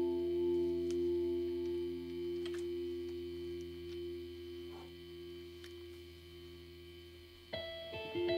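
A held chord from a band's electric instruments rings out and slowly fades away over several seconds over a low steady amplifier hum, with a few faint clicks. Near the end, new notes start up sharply and the music grows louder again.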